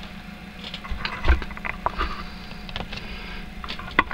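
A few irregular light knocks and clicks from handling the hinged wooden battery box as it is brought into view and opened, over a steady low hum.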